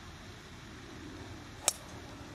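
Golf driver striking a teed-up ball off the tee: one sharp crack near the end, over a faint steady background.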